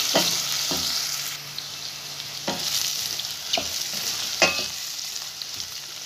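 Diced vegetables sautéing with a sizzle in a stainless steel pot while a wooden spoon stirs them, knocking against the pot a few times; the loudest knock comes about four and a half seconds in. The sizzle is stronger in the first second or so, then quieter.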